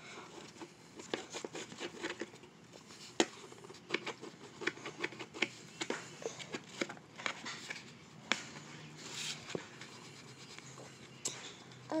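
Wax crayon scratching back and forth on a paper coloring page, in quick irregular strokes with small taps as the crayon hits the paper.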